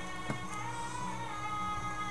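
Quiet music with long held notes playing in the background.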